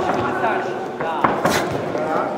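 Boxing gloves smacking home: three sharp punches in quick succession about a second in, over shouting from around the ring.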